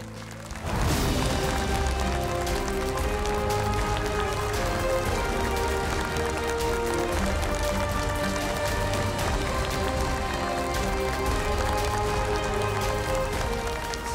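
Studio audience applauding, with stage music playing under it. Both come in suddenly just under a second in and hold steady.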